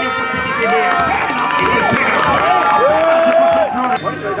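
A crowd of football spectators shouting and cheering, with several long, drawn-out shouts that rise and fall over a busy background.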